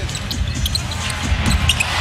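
Basketball dribbled on a hardwood court, thudding several times, with a steady hum of arena crowd noise underneath and a few short high squeaks.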